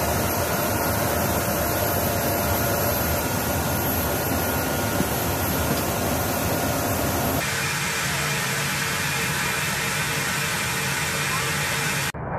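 Steady jet aircraft engine noise: a broad rush with a high steady whine over it. The tone of the noise changes abruptly about seven seconds in.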